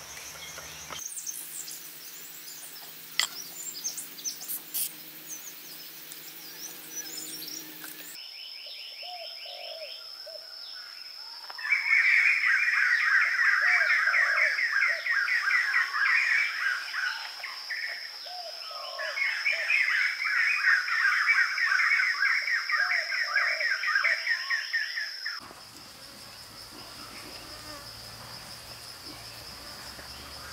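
Forest ambience of insects and birds: a steady high insect drone, and through the middle stretch a loud, fast, endlessly repeated bird trill that stands above everything else. The background changes abruptly several times, and a single sharp click comes about three seconds in.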